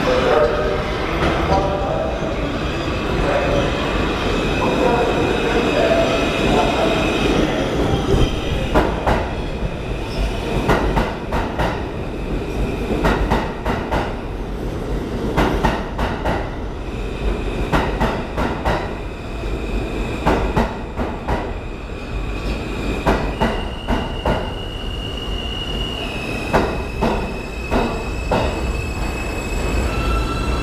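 New York City Subway R160 train pulling into the station and running past close alongside the platform, with a steady rumble. A thin high whine holds steady and steps in pitch a few times, and from about eight seconds in there is rapid clicking as the wheels cross rail joints.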